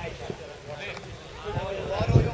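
People talking indistinctly at a distance, over an uneven low rumble.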